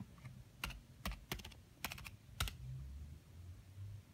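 Laptop keyboard keys tapped in a quick run of about eight keystrokes, typing a short word and finishing with a louder press as the comment is entered.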